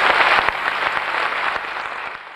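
A large audience applauding, a dense steady clapping that slowly fades.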